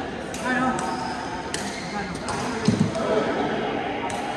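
Badminton hall sounds: voices echoing in the large room, two sharp clicks of rackets striking a shuttlecock, and a dull low thud about two-thirds of the way through.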